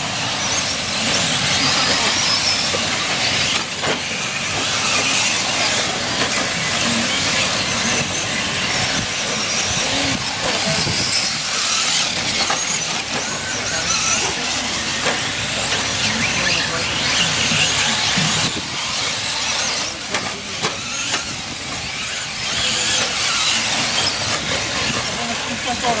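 Several electric RC short-course trucks racing on a dirt track: a steady, high whine from motors and drivetrains that rises and falls in pitch with the throttle.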